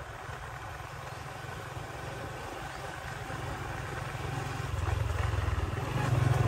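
Motorbike engine running at low speed with a steady low rumble, growing louder about five seconds in.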